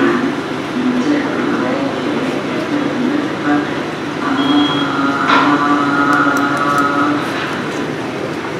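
A woman's voice from a patient video played over a hall's loudspeakers: her voice after a botulinum toxin injection for spasmodic dysphonia. It is muffled, with a steady hiss from the playback.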